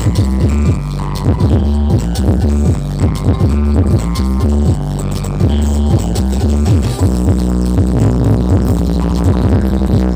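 Electronic dance music played very loud through a towering stack of sound-system speaker cabinets at a sound check, dominated by heavy bass with a steady beat.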